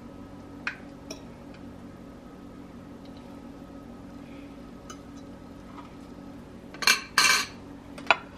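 Metal utensil clinking and scraping against dishes as scrambled egg is served: a couple of light clicks about a second in, then a burst of loud clatter near the end.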